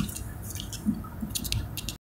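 Handling noise from a phone held and moved by hand: scattered clicks and rubbing on the microphone, over a low road rumble inside a moving car's cabin.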